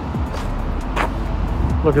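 Steady low rumble of a car driving slowly along a town street, heard from inside the cabin.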